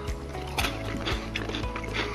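Quiet background music, with a few faint clicks from chewing a Raffaello coconut candy.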